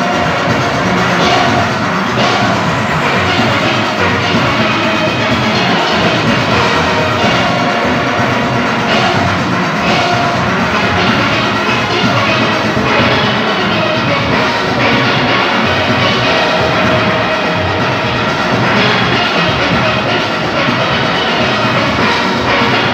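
A large steel orchestra playing at full volume: many steelpans of different ranges struck together in a dense, steady, continuous performance.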